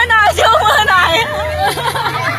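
Several people's voices: excited overlapping shouting and chatter, over a steady low hum that fades about halfway through.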